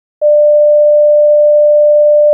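A loud, steady electronic test tone on a single mid pitch, starting suddenly a moment in and holding without change: the tone that goes with TV colour bars when no programme is on air.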